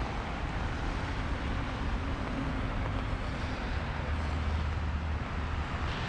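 Steady outdoor rush of nearby road traffic mixed with the flowing, rain-swollen river, with a deeper rumble swelling about four seconds in.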